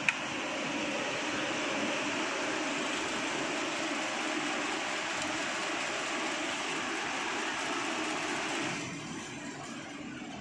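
Steady rushing road and engine noise inside a moving car's cabin, easing off somewhat near the end.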